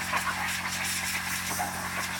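Compressed air from an air compressor line blowing in a steady hiss, with a steady low hum underneath.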